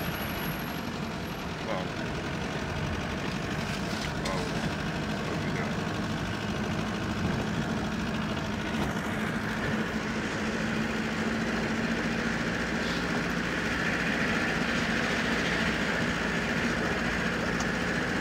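Car engine and road noise heard from inside the cabin: a steady hum that grows slightly louder in the second half.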